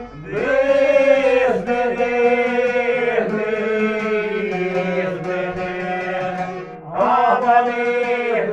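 Men singing together in long held phrases, accompanied by two violins and a long-necked lute. The singing drops away briefly at the start and again just before the end, each time coming back with a new phrase.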